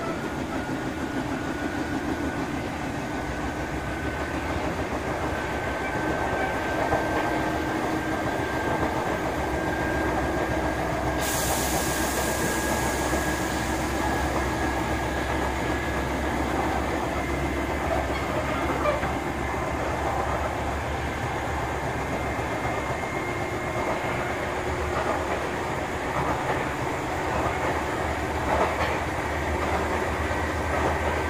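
Sotetsu 7000 series electric train running on the line, heard from inside the car: a steady rumble of wheels on rail with faint clicks, and a motor whine that edges up in pitch over the first dozen seconds. About eleven seconds in there is a sudden burst of air hiss that fades over a few seconds.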